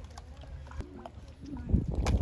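Footsteps squelching in soft, wet mud, with faint voices and a steady low rumble behind them; a louder thump comes near the end.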